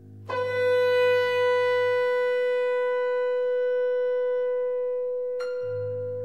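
Chamber music for bass trombone, bass clarinet and harp. A long, high held note with a sharp attack comes in a third of a second in and is sustained. Under it, a low held note drops out about two seconds in and returns near the end, just after a sharp plucked attack.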